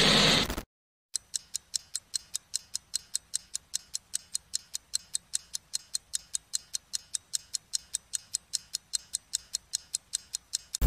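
A short burst of TV-static hiss, then after a brief silence an even, rapid clock-ticking sound effect at about four ticks a second.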